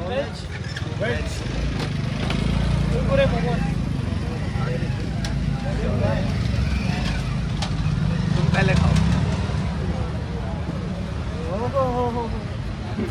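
Steady low rumble of street traffic, with faint snatches of people talking over it.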